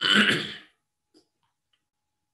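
A man clearing his throat once: a single loud, rasping burst lasting under a second.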